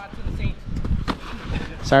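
Boxing gloves landing punches: a sharp slap as a jab lands at the start, and another about a second later, over a low rumble.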